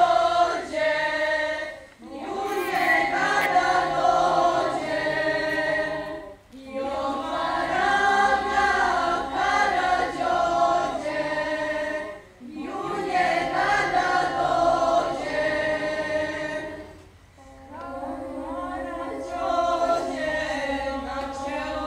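Girls' choir singing a cappella, in phrases of four to five seconds with brief pauses for breath between them.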